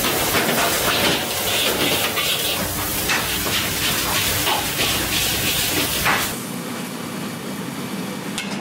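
Food sizzling in woks over high gas burners, with a metal spatula clanking and scraping against the wok. About six seconds in the sound drops to a quieter, steadier sizzle of meat frying in a pan.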